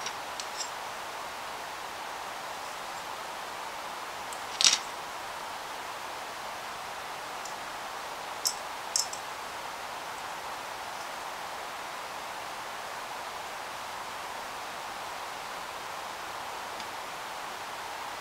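Steady background hiss with a few light clicks of small plastic model-kit parts being handled and fitted together: one sharper click about five seconds in and two close together around nine seconds.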